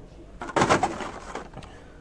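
Rustling and clattering of plastic-and-cardboard blister-carded toy car packages being handled and shuffled in a bin, a noisy burst lasting about a second that starts about half a second in.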